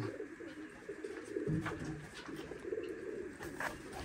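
Domestic pigeons cooing: several low coos overlapping one another without a break.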